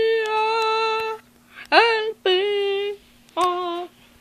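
A young voice singing four long held notes with short breaks between them, the second sliding up into its note.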